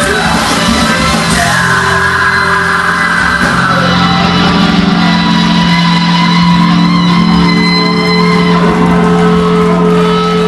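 Live post-hardcore rock band playing loud with vocals. About four seconds in, the music settles into held chords that ring out steadily.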